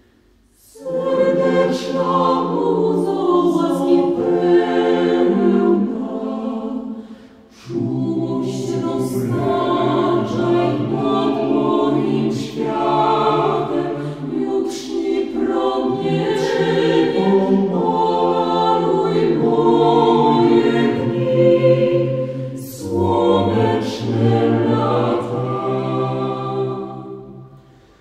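A cappella vocal group singing in close harmony, several voices with a low bass part and no instruments. The voices come in just under a second in and break off briefly about seven seconds in before going on.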